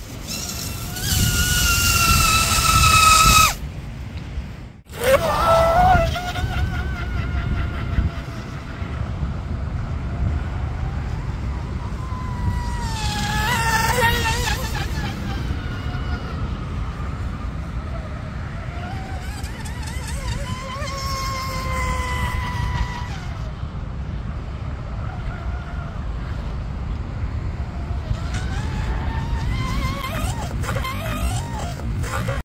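Electric motor of a radio-controlled tunnel-hull powerboat whining in several bursts of throttle, its pitch rising and falling, the loudest burst near the start. A steady low rumble runs underneath.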